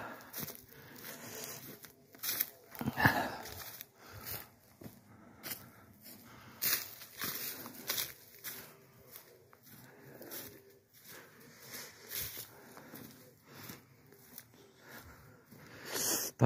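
Footsteps crunching and rustling through dry fallen bamboo leaves on a path, at an uneven walking pace.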